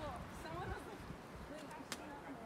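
Faint, indistinct voices of people talking, with a single sharp tap near the end.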